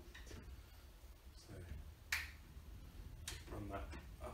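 Plastic pivot gasket being pressed onto the edge of a glass shower panel by hand, giving two short sharp snaps, about two seconds in and again a little over a second later.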